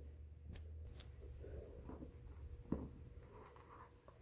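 Faint handling sounds of plastic pony beads and stretchy cord as the cord is pulled tight through the beads: a soft rustle with a few sharp little clicks of beads knocking together.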